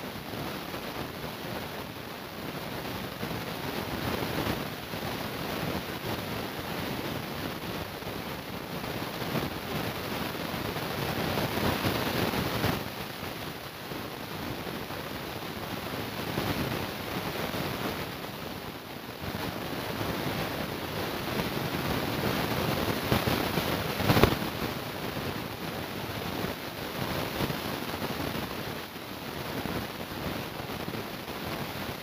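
Shopping-mall ambience heard through a phone's microphone as it is carried: a steady, shifting wash of noise, with one sharp knock late on.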